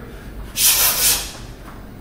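A boxer's hissing exhale through the teeth while working punches and slips against a swinging slip bag, one breath that swells about half a second in and fades well before the end.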